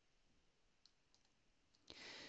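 Near silence, with a few faint, brief clicks.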